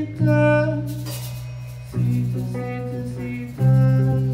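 Live kirtan music: acoustic guitar chords struck about every two seconds and left to ring out, with harmonium and a sung line over them.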